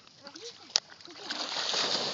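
Dogs splashing as they bound through shallow water, the splashing building up from about halfway through. A sharp click sounds just before the splashing starts and is the loudest moment.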